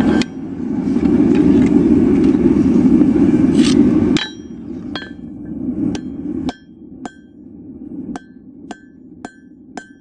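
Blacksmith's hand hammer striking a red-hot steel bar on an anvil, sharp ringing blows about one to two a second that begin near four seconds in. Before them a loud steady rushing noise runs and cuts off suddenly at about four seconds.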